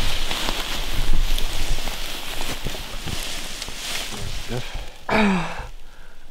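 Close rustling and scuffing of grass and clothing while a downed whitetail buck's head and antlers are handled and repositioned. A brief voice sound with a falling pitch comes about five seconds in.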